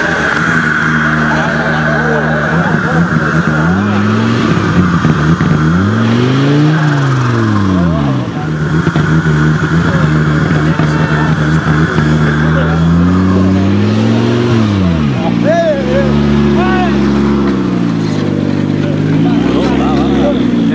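Audi Quattro rally car's turbocharged five-cylinder engine revving up and down in long swells, several times, as the car sits stuck off the road on grass trying to drive out. Voices of people around the car.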